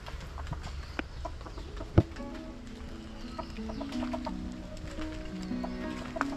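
Chickens clucking faintly, with a single sharp knock about two seconds in. Then background music with a simple stepping melody comes in and carries on.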